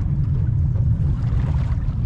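Low, steady rumble of distant military jets, loud enough to be taken at first for thunder.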